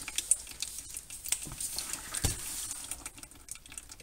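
A thin stream of gear oil running from the open drain plug hole of a VW 02J five-speed manual transmission into a catch container, with a light, irregular patter of small splashes.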